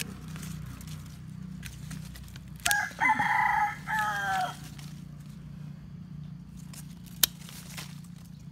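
A rooster crows once, about three seconds in: a call of roughly two seconds that falls in pitch at its end. A single sharp snip of pruning shears comes near the end.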